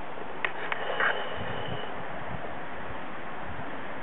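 Steady wind noise on a handheld camera's microphone, with a couple of faint clicks of handling about half a second in.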